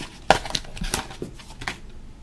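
A cardboard sample card being ripped open and a plastic blister pack pulled out of it: a series of sharp crackles and crinkles of card and plastic. The loudest crack comes about a third of a second in.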